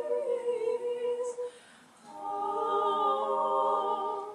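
A small group of singers singing a cappella in slow, held chords. The chord breaks off about a second and a half in, and after a short pause a new, higher chord is sung and held.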